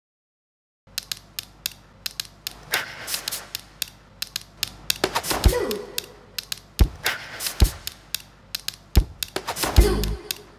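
Rapid sharp clicks and snaps of denim jeans being handled: metal buttons and fasteners clicking over fabric rustle, starting after about a second of silence. From about five seconds in, a few deeper thumps join the clicks.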